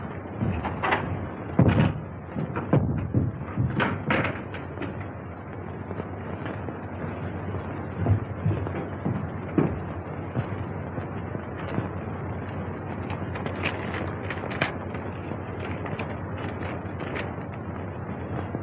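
Several sharp knocks and thuds, the loudest in the first few seconds and fainter clicks later, over the steady hiss of an early sound-film soundtrack.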